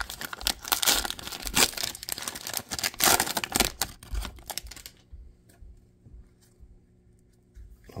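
Foil wrapper of a Prizm football card value pack being torn open and crinkled by hand. The tearing and crinkling are loud for about the first four seconds, then only a few faint rustles follow.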